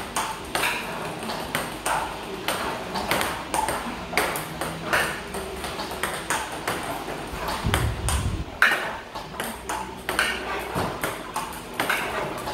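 Table tennis balls fired by a ball-feeding robot, bouncing on the table and onto the floor in a rapid, uneven run of sharp clicks.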